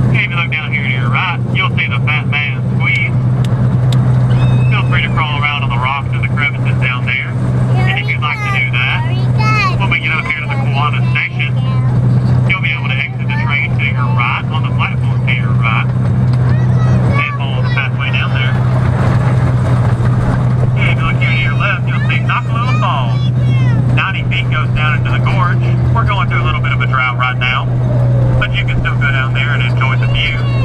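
Engine of an open-air park tour train running steadily under load, a constant low drone, with voices over it.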